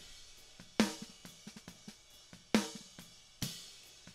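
Soloed close-miked snare drum tracks from a rock drum recording playing back: three snare hits with ringing tails, about a second in and then two close together near the end. Cymbals and hi-hat bleed faintly through between the hits. The bleed is still present after an attempt to remove it.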